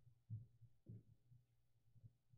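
Near silence: a faint steady room hum with two soft, low thuds about half a second apart, footsteps on the sanctuary floor.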